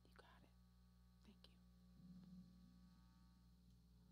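Near silence: a faint, steady low hum, with a few faint soft clicks.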